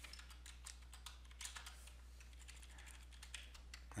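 Faint typing on a computer keyboard: an uneven run of quick keystrokes.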